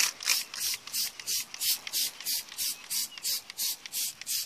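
A trigger spray bottle of Mothers foaming wheel and tire cleaner being pumped rapidly: a steady run of short sprays, about three a second, onto a tire and wheel.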